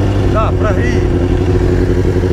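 Kawasaki Ninja sport bike's engine idling steadily, just caught after a tow start with its spark plugs flooded with fuel.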